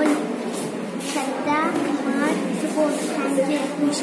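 Several people talking at once in a busy hall: indistinct, overlapping chatter with some higher children's voices.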